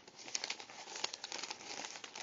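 Paper fast-food wrapper being unwrapped and handled, crinkling with a steady run of small sharp crackles.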